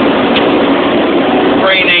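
Semi truck driving: the diesel engine and road noise run steadily inside the cab. A voice begins near the end.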